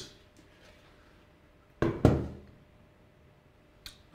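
Two sharp knocks about a quarter second apart, a couple of seconds in, the second the louder: the switch's removed top cover being set down on a desk. A faint click follows near the end.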